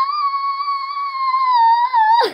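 A girl's voice holding one long, very high-pitched squealing note, loud and slightly wavering, dipping a little in pitch near the end.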